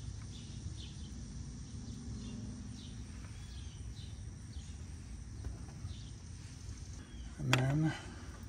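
A small bird chirping repeatedly in short calls, over a steady low outdoor rumble.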